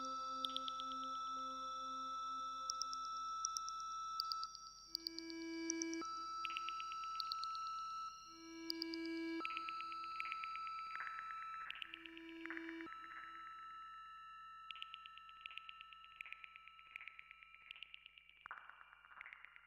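Ambient closing music of steady held tones under rapidly pulsing high notes, the chords changing every second or two and slowly fading out over the last few seconds.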